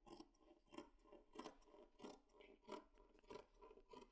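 Faint, irregular snips of large dressmaking shears cutting through four layers of woolen knit fabric, about one or two cuts a second.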